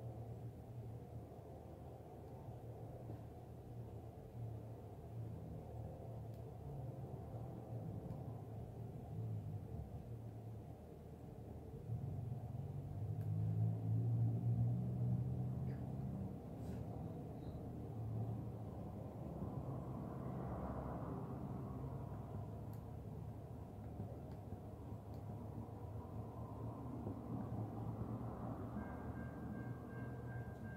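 Low rumble of an approaching train heard from indoors, swelling to its loudest about halfway through and building again toward the end.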